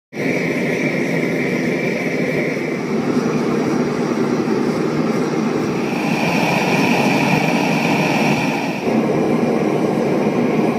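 Gas burner firing into a furnace, a loud, steady rushing roar of flame. The tone shifts about six seconds in and again near nine seconds.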